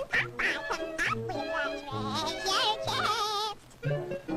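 A high, warbling cartoon voice singing a wavering tune over a light orchestral score with a steady bouncing bass. It breaks off shortly before the end.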